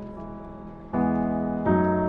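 Slow instrumental Christmas piano music: soft notes fading away, then a fuller chord struck about a second in and another shortly before the end.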